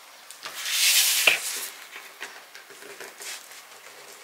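A cake board sliding and scraping across a cardboard cake-box base for about a second, with a light knock near the end of the slide, then small taps and rustles as the board is set in place.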